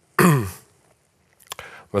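A man's short vocal sound, falling in pitch, about a quarter second in: a throat-clearing or hesitation noise from the lecturer. A pause follows, then a few small mouth clicks as speech starts again near the end.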